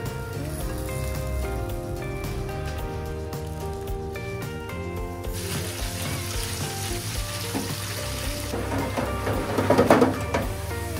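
Cut potatoes deep-frying in hot oil in a fryer basket: a dense sizzle that starts about halfway in and grows louder near the end, over background music.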